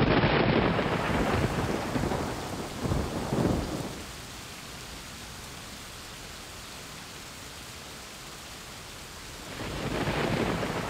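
Thunder rumbling over rain, dying away about four seconds in to leave steady rain, with a second roll of thunder building near the end.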